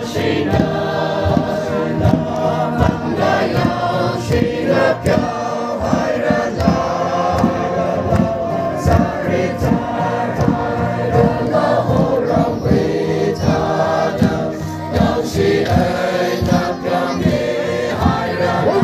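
A crowd of many voices singing a gospel hymn together, with a steady beat running under it.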